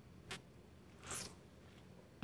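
A person sipping from a small coffee cup, faintly: a short tick, then about a second in a brief slurp.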